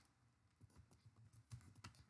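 Faint typing on a computer keyboard: a run of light key clicks, more frequent in the second half.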